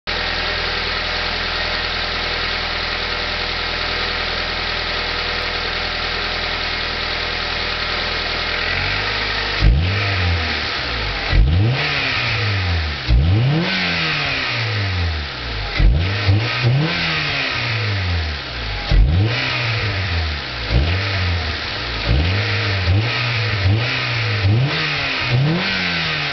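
1996 Honda Accord LX's 2.2-litre four-cylinder breathing through a Prelude intake and airbox with a K&N filter and no lower resonator box: idling steadily, then blipped on the throttle about a dozen times from about ten seconds in, each rev rising sharply and dropping back to idle, the blips coming quicker and smaller near the end.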